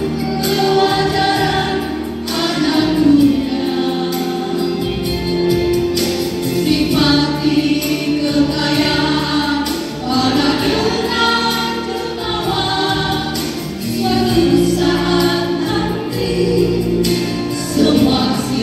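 A women's vocal group singing a gospel song together into handheld microphones, several voices sustaining notes at once, amplified through a church sound system.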